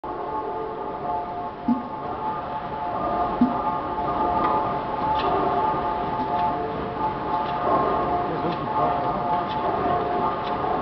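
Half-horsepower Crossley side-crank slide-valve gas engine starting up: two heavy thumps in the first few seconds, then light clicks about once a second as it turns over. A steady ringing drone sounds behind it.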